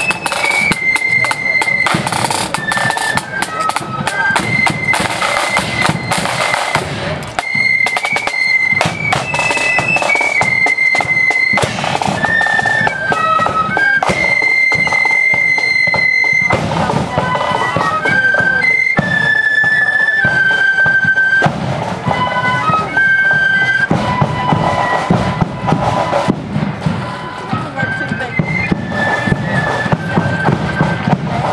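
A marching flute band playing a march: massed flutes carry a high unison tune over side drums and a bass drum, at a steady loud level.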